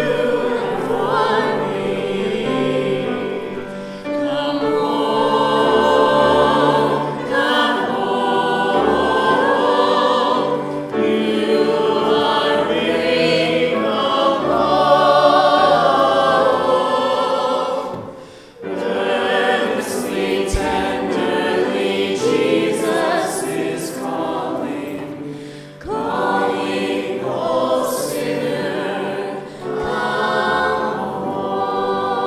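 A small vocal group of men's and women's voices singing a song with grand piano accompaniment, with brief breaks between phrases about two-thirds of the way through and again near the end.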